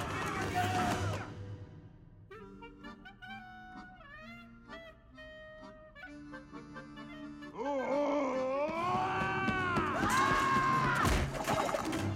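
Orchestral film score: a loud opening burst, then soft, short, separate notes, then from about halfway in loud music full of swooping pitch glides. A sharp crash comes near the end.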